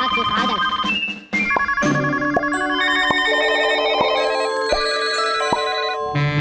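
Cartoon soundtrack music: comic sliding pitch effects in the first second or so, then a bright, ringing melody of held electronic tones with a few sharp hits.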